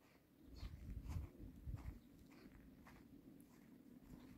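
Near silence with faint irregular low thumps and a few light clicks, strongest in the first two seconds.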